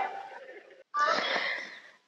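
A woman's short, breathy laugh about a second in, fading out. Before it, a brief burst of sound cuts off suddenly.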